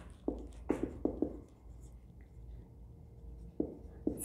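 Marker pen writing on a whiteboard: a few short scratchy strokes in the first second and a half, then a quieter stretch, and one more stroke near the end.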